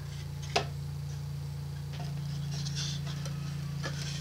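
Quiet handling of a framed butterfly display over bubble wrap: a sharp click about half a second in, faint plastic rustling around the middle and a small tap near the end, over a steady low hum.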